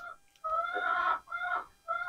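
A bird calling twice: a longer pitched call starting about half a second in, then a shorter one.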